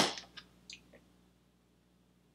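Green plastic handle of a Wetline Xtreme gel tub's lid being pulled off: one sharp crack at the start, then a few small plastic clicks within the first second.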